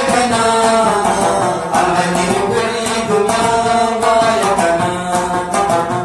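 Rabab plucked in quick, even strokes with a man singing a Pashto folk melody over it.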